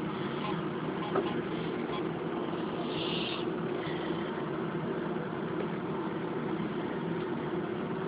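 A steady low mechanical hum under a faint hiss, with a short rise in hiss about three seconds in.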